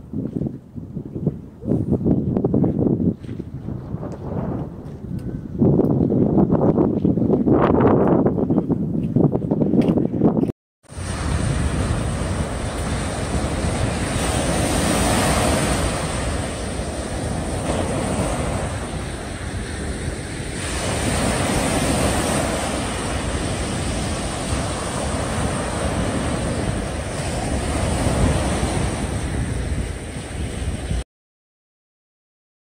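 Wind buffeting the microphone in uneven gusts, then, after a sudden break, small waves breaking and washing up a sandy beach: a steady surf hiss that swells and eases every few seconds.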